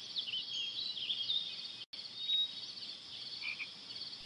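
Faint outdoor ambience of many short, high chirping calls from small wild animals, with a brief break in the sound about two seconds in.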